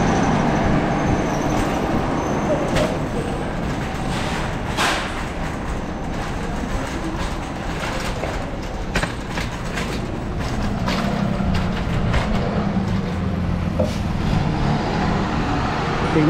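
Loaded metal shopping cart being pushed, its wheels and wire basket rattling steadily, with scattered clanks. A low rumble joins in during the second half.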